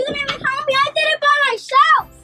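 Excited, high-pitched voices exclaiming with no clear words.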